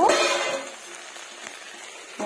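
Okra and potato chorchori sizzling faintly and steadily in a karai on a flame turned right down, after a brief scrape of the metal spatula against the pan at the start.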